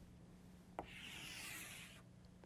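Chalk on a blackboard: a sharp tap as the chalk meets the board a little under a second in, then a steady scrape for about a second as a long vertical line is drawn down the board.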